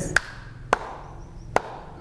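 Three short, sharp clicks, spaced unevenly about half a second to a second apart, over a low background hum.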